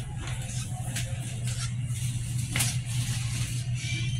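Grocery store ambience: a steady low hum under faint background music, with a brief knock or rustle about two and a half seconds in.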